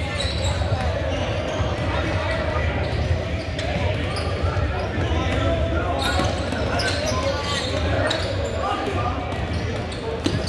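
Basketball game ambience in a large hall: a ball bouncing on the hardwood court amid echoing voices of players and spectators.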